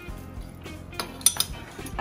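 Sharp metallic clinks about a second in, from a metal hand-held lemon squeezer being handled over ceramic bowls, over soft background music.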